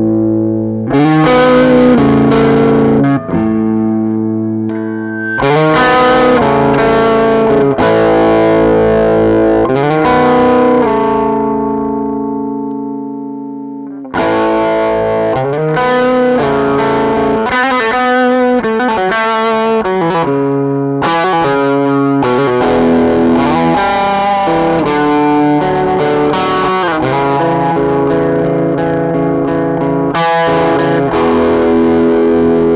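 Semi-hollow electric guitar played through a Doxasound dual overdrive pedal (Amp 11 / Honey Bee OD), giving overdriven chords and single-note lines. Partway through, a chord is left to ring and fade for a few seconds before busier playing picks up again.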